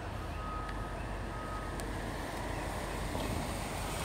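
Car engine and tyres giving a steady low rumble as the red sedan rolls up close and idles. A faint, steady high tone sounds during the first half.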